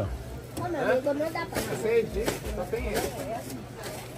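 Indistinct voices of several people talking, mixed with background chatter, with a few short knocks.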